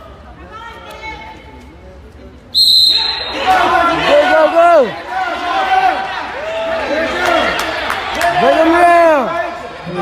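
Quiet crowd murmur, then about two and a half seconds in a referee's whistle blows once, short and shrill, signalling the restart of the wrestling bout. Spectators immediately break into loud, repeated shouting and yelling in the gym hall.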